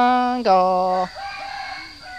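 A man singing Hmong kwv txhiaj, holding a long level note and then a lower one, breaking off about a second in; a fainter, rougher sound fills the rest.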